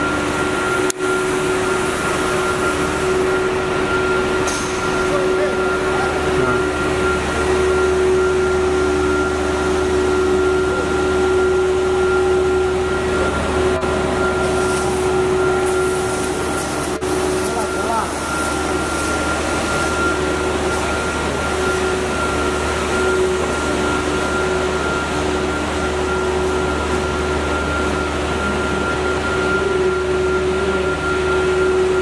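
Plastic pipe extrusion line running in a factory hall: a steady machine hum with a few constant tones over a low rumble.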